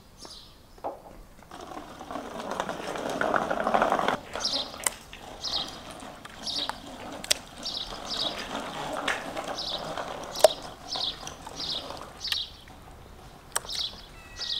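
A small bird chirps over and over, roughly one or two short high chirps a second, from about four seconds in. Sharp taps of a knife on a wooden cutting board come now and then, and a rustling noise rises and fades in the first few seconds.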